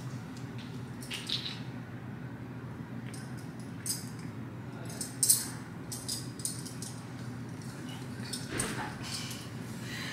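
Soft rustles and light clicks of long braids being handled and pulled aside, over a steady low room hum; the sharpest click comes about five seconds in.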